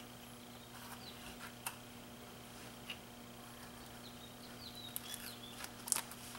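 Carving knife cutting into a wooden block: faint scraping strokes with small squeaks and a few light clicks, the loudest cluster near the end, over a steady low hum.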